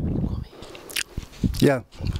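A man's voice through a handheld microphone held close to his mouth. The speech breaks off into a quieter gap, with a single sharp click about a second in, before the voice resumes near the end.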